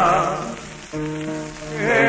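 A male voice sings a bolero on an old 1950 recording, to an accompaniment of guitars with a requinto. He holds a note with a wide vibrato that fades about a second in. Steady held guitar notes follow, and the voice comes back near the end. A crackling surface noise from the old recording runs underneath.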